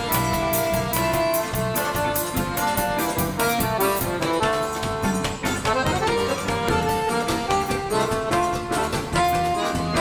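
Live forró band playing an instrumental passage: accordion melody over bass guitar and drums, with a steady, even beat.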